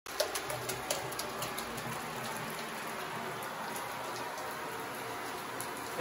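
Shower water falling onto a tiled shower floor and onto sock-covered feet: a steady hiss of spraying water, with a few sharper splashes in the first second and a half.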